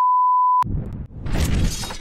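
A steady electronic beep tone cuts off with a click about half a second in. A noisy, crashing, shatter-like transition sound effect follows and runs through the rest.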